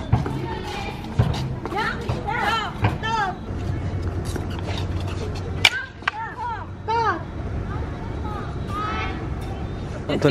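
Kendo kata practice with wooden swords (bokken): short shouted voice calls (kiai) come at about two to three seconds in and again around six to seven seconds. A single sharp wooden clack sounds near the middle.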